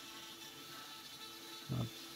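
Dremel rotary tool running steadily with a small carbide burr cutting into wood, heard as a faint, even buzz.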